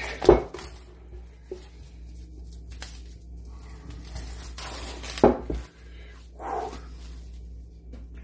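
Two short thumps, one just after the start and a louder one about five seconds in, with light handling rustles between, over a low steady hum.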